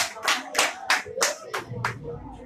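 Hands clapping in a steady rhythm, about three claps a second, stopping near the end.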